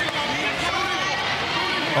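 Men's voices shouting and talking over one another, with no clear words, over the hum of the arena crowd.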